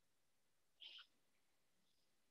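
Near silence over the call audio, with one faint, short high sound about a second in.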